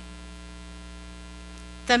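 Steady electrical mains hum in the microphone's sound feed, with a woman's voice starting just at the end.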